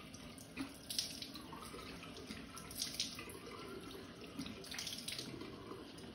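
Bathroom tap running steadily into a sink, with a few brief splashes as water is scooped up in cupped hands.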